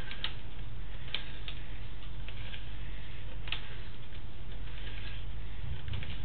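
Sewer inspection camera's push cable being pulled back out of the pipe, making a steady low hum with scattered light clicks and ticks at uneven intervals.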